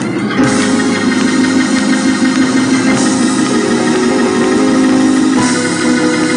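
Loud gospel praise-break music led by organ, with sustained chords and bright full-range hits about half a second in, around three seconds and near the end.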